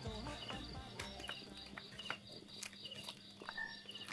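Wood campfire crackling with sharp, irregular pops, over a steady pattern of short, high, repeated chirps. Music fades out during the first second or two.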